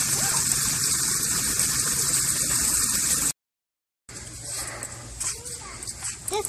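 Steady rush of running water. It cuts off suddenly about three seconds in, and after that the sound is quieter, with a child's faint voice near the end.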